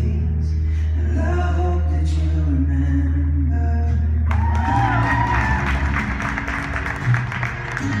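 Recorded show music with a long held low note. About four seconds in, the audience breaks into cheering, shouts and clapping that carry on under the music.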